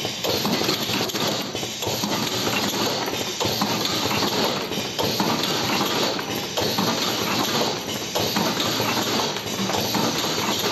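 Automatic rotary cartoning machine running: a continuous clatter of quick mechanical knocks and taps over a steady hiss.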